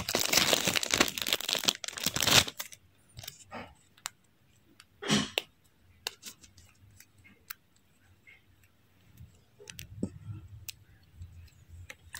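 Small clear zip-top plastic bag crinkling as it is handled for about two and a half seconds, then scattered light clicks and a short rustle about five seconds in.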